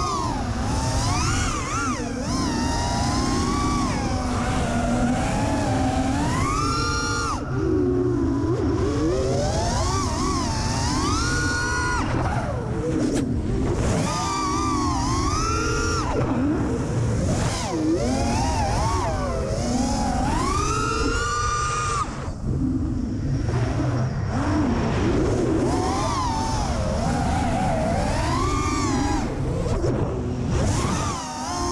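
Brushless motors of an FPV racing quadcopter whining, their pitch rising and falling continuously with throttle, over a low rumble of wind, as picked up by the quad's onboard action camera. The upper whine drops out briefly twice, about a quarter of the way in and again about three-quarters of the way in. This is a test flight after the motors' bearings were replaced, meant to show it flies without vibration.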